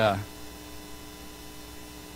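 Steady electrical mains hum made of several fixed pitches, on the recording of a man's sermon. His drawn-out "uh" ends just after the start.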